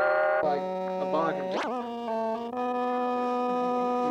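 Moog modular synthesizer playing: a wavering tone at the start, then held notes that change pitch a few times, with a quick upward swoop about a second and a half in.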